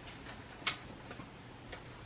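Quiet room with a few small clicks. The sharpest comes about two-thirds of a second in, and two fainter ones follow.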